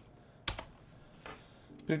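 A few computer keyboard keystrokes in a quiet pause, one sharp click about half a second in standing out from fainter ticks.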